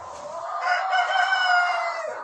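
A rooster crowing: one long crow that swells, is loudest in the second half, and tails off at the end.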